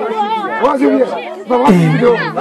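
Live, amplified Moroccan folk music: a violin held upright plays a wavering melody alongside a singer's refrain. Near the end a low note is held.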